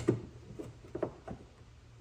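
A few light clicks and taps as a hood-strut bracket is slid into place over a screw and handled against the hood. The sharpest click comes right at the start, followed by smaller ones about half a second apart.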